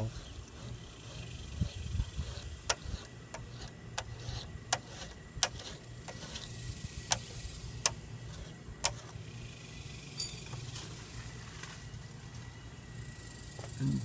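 Razor blade scraper working on window glass: short sharp clicks about every half second from about a second and a half in to about nine seconds, over a steady low hum. There is a brief jangle about ten seconds in.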